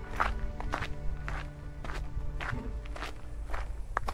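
Footsteps on a gravel track, a step roughly every half second, over background music holding long, steady notes.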